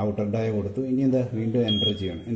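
A man talking, and near the end one short, steady, high electronic beep from the wheel balancer's keypad as a button is pressed.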